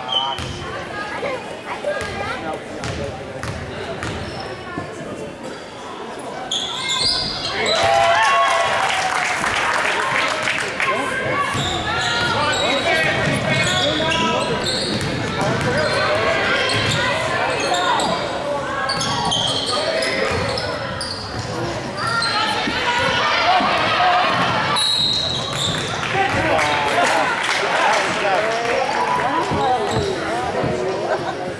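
Basketball game in a large gym: a ball bouncing on the hardwood court amid a crowd's voices, growing louder about seven seconds in as play picks up.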